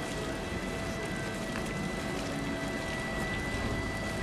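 Steady noise of quarry machinery running, with a faint high whine held over it.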